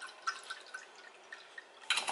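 White wine poured from a glass bottle into a cocktail glass, with a faint irregular gurgling from the bottle neck. Near the end, a sharp clink.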